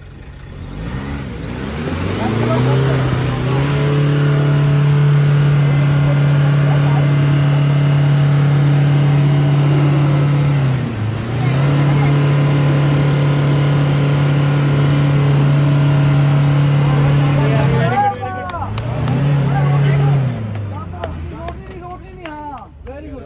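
Isuzu D-Max pickup engine revving up and held at high revs for long stretches, with a brief dip near the middle, then a short rev and a fall back near the end: the truck straining to drive out of the mud it is stuck in.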